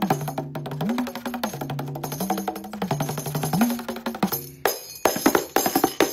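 Kanjira, the small South Indian frame tambourine, played with rapid finger strokes and a light jingle. Its ringing low pitch bends up and back down three times as the skin is pressed, and it ends in a run of sharper, separate strokes.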